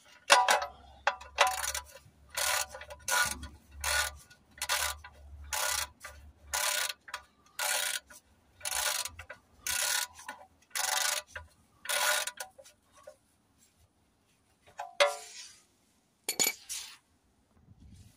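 Ratchet wrench clicking in about twenty quick back-strokes, roughly two a second, as it tightens the oil sump drain plug back up. The clicking stops about twelve seconds in, and two brief handling sounds follow near the end.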